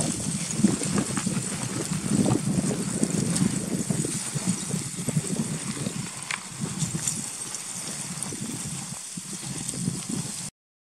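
Footsteps crunching irregularly on loose rock and gravel as people walk down a scree slope.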